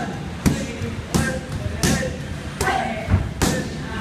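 Strikes landing on Muay Thai pads: five sharp smacks in a steady series, about three-quarters of a second apart.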